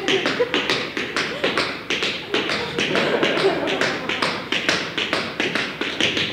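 Tap shoes striking a wooden floor in a fast, uneven solo tap-dance rhythm, several sharp taps a second.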